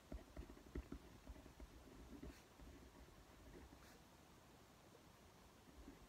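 Near silence: room tone with faint light knocks in the first couple of seconds and two brief faint scratches of a pen writing on paper.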